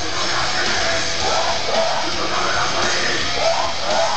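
Loud live post-hardcore rock: the full band playing, with the vocalist singing into the microphone over it.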